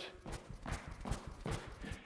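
Light, rhythmic landings of running shoes on rubber gym flooring during low-intensity pogo hops, about two or three soft thuds a second.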